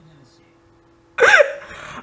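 A quiet stretch, then a sudden short vocal exclamation about a second in, its pitch rising and falling, fading away over the next half second.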